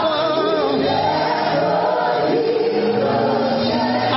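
A choir singing a slow gospel worship song with sustained, gliding sung lines over instrumental accompaniment.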